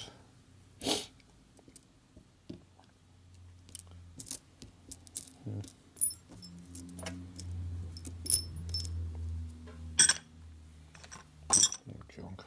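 Loose steel bolts and washers clinking as they are handled and sorted on a workbench: scattered sharp metallic clinks, the loudest two near the end. A low hum runs underneath through the middle.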